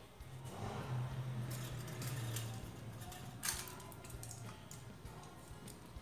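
Faint background music holding a low note for the first four and a half seconds, with light handling noises and a soft knock about three and a half seconds in.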